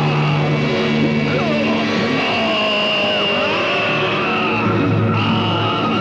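Dramatic background music score: sustained low notes that shift every second or so, with higher gliding tones laid over them.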